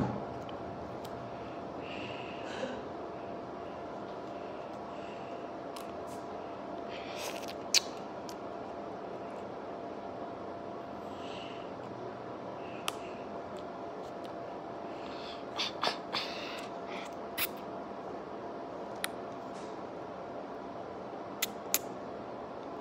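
Faint eating sounds of a child sucking jelly from a small plastic pouch: scattered short clicks and smacks and brief hissy sucks over a steady low hum, the sharpest click about eight seconds in.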